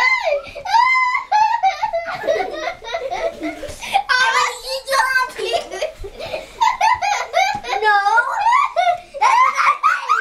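Children laughing and giggling loudly, high-pitched, with bits of child chatter mixed in and no pause.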